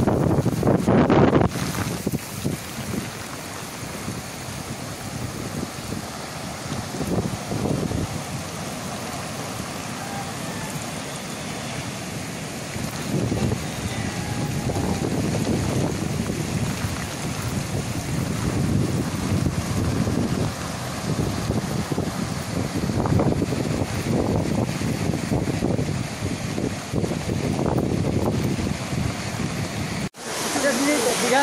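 Gusting storm wind of Cyclone Bulbul buffeting the microphone over rough surf breaking against the sea wall, rising and easing in repeated gusts.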